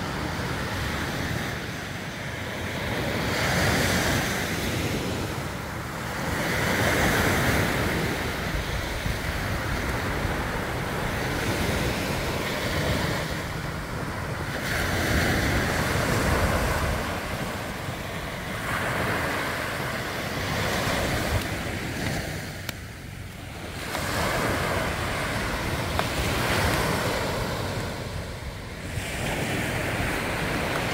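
Surf from a rough sea breaking on a sandy beach, the wash swelling and falling back every few seconds, with wind blowing on the microphone.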